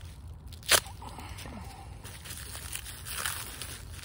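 Plastic wrapping being slit with a knife blade and peeled off by hand: one sharp snap just under a second in as the plastic gives, then soft crinkling and rustling of the wrap.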